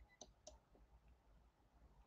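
Near silence with a few faint clicks in the first second.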